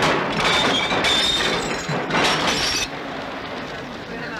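Film fight sound effects: a rapid run of crashes with glass shattering and wood breaking, stopping abruptly about three seconds in, after which only a quieter outdoor background remains.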